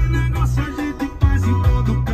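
FM radio music playing loudly through the car's audio system, with a heavy bass line.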